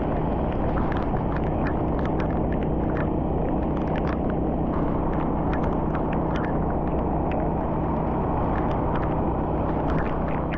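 Steady road and engine rumble of a car driving on a rain-soaked highway, heard from inside the car, with many short, irregular ticks of raindrops striking the windshield and roof.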